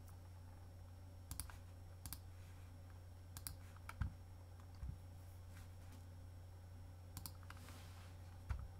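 Computer mouse clicks while plotting points of a polygonal lasso selection in Photoshop: about eight sharp clicks, some in quick pairs, with the loudest, with a dull knock, about four seconds in. A low steady hum sits underneath.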